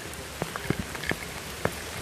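Steady rain falling, with individual drops ticking sharply now and then.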